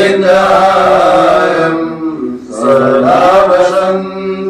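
A voice chanting a Hindu devotional mantra in long held phrases, breaking briefly about two seconds in.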